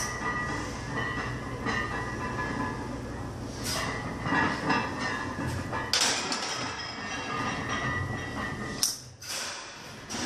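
Gym room sound during a heavy barbell back-squat set: a steady noisy background broken by a few sharp metallic clanks of the loaded barbell and rack, the sharpest one just before the end.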